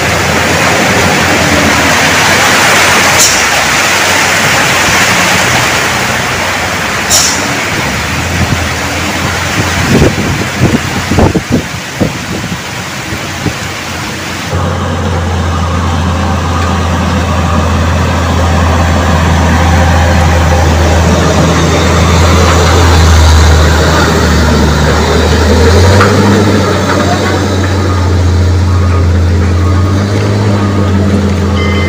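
Heavy-truck traffic on a wet mountain road. The first half is a steady noisy wash of road noise with two short high hisses and a few sharp thumps near the middle. From about halfway a big truck engine's low steady drone dominates, rising a step in pitch near the end.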